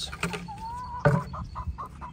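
Backyard hens clucking: one drawn-out call, then a run of short clucks at about five a second, with a louder short bump about halfway through.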